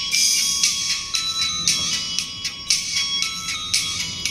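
Titan WT A500 horn tweeter playing music through a single capacitor. It reproduces almost only the treble: steady bright high notes and quick cymbal-like ticks, with very little body or bass.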